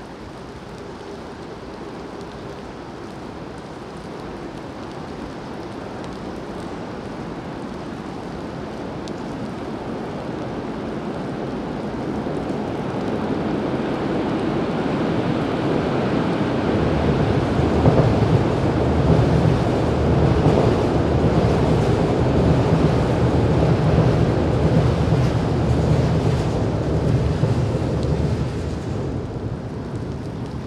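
Steady rain falling, with a deep rumble that builds slowly over about fifteen seconds, stays loud for about ten seconds, then drops off sharply near the end.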